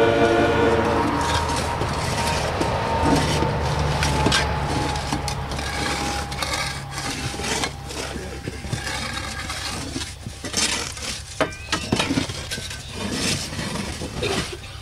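Several shovels digging into loose soil and tipping it into a grave: irregular scrapes of steel blades and knocks of dirt landing, growing more distinct in the second half.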